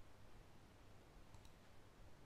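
Near silence: faint room tone with a low hum, and a faint click about one and a half seconds in.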